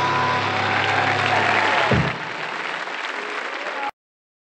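Audience applause at the end of a live jazz band number. The band's final held chord rings under the clapping and stops about two seconds in. The applause goes on alone and cuts off suddenly near the end.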